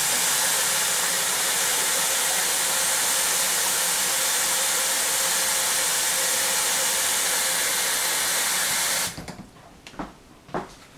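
Water being boiled, a strong steady hiss that cuts off suddenly about nine seconds in.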